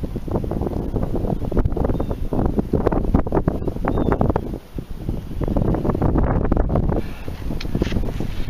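Wind buffeting the microphone in loud, uneven gusts, easing off briefly about halfway through.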